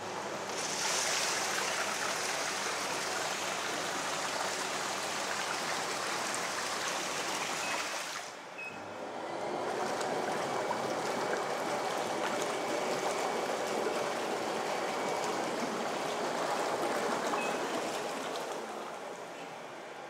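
Water jets of an acrylic double massage bathtub running, with the filled tub's water churning and bubbling. It drops out briefly about eight seconds in, starts again, and eases off near the end.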